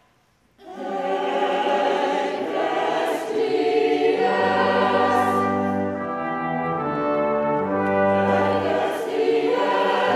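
Church music begins abruptly about half a second in: full, brass-like pipe organ chords with choir singing. Deep bass notes join a little before the middle.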